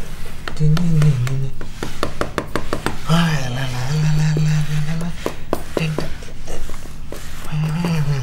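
A low voice held on long, wavering notes, humming or moaning rather than forming words, with many sharp clicks and knocks between the notes.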